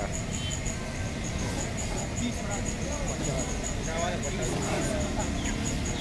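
Busy street-stall background: a steady low rumble of traffic with indistinct voices, and faint chatter about four seconds in.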